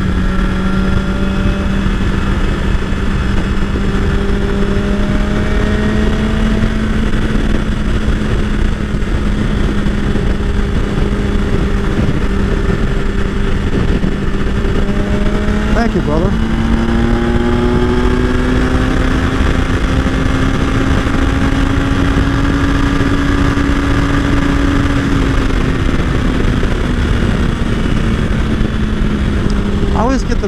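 BMW S1000XR inline-four engine at freeway cruising speed, heard over heavy wind and road noise. About halfway through the engine note climbs as the bike speeds up, holds, then eases back down near the end.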